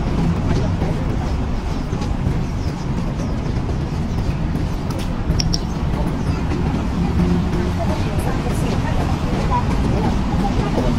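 Steady road traffic noise, a low rumble from vehicles on the adjacent street.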